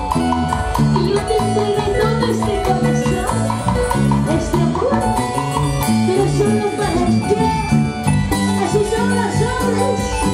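Live band playing a Peruvian huayno through the PA, with electric bass and a steady beat. A quick run of repeated melodic notes sounds over it in the first few seconds.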